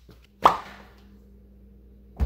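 A single short pop with a quickly falling pitch about half a second in, fading fast, followed by a faint steady low hum.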